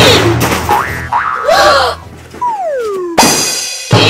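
Cartoon sound effects over light background music: whistle-like glides falling in pitch, springy boings, and a sharp loud hit a little after three seconds in, with another near the end.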